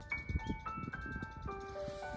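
Background music: a gentle melody of single chiming keyboard notes, one after another, over a low, uneven rumbling noise.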